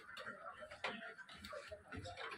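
Faint, irregular knocks and clicks, a few in two seconds, with quiet voices in the background.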